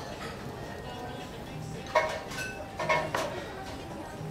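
Two short clinks of tableware, chopsticks against a small ceramic dish, about two and three seconds in, over background music and voices.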